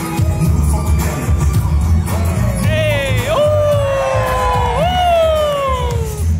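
Battle music with a heavy bass beat; from about two seconds in, a lead melody plays several long notes that glide downward in pitch, one after another.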